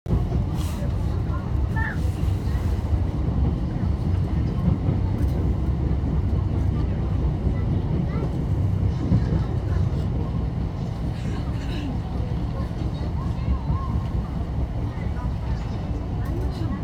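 Steady low rumble of a Mugunghwa-ho passenger train running, heard from inside the carriage.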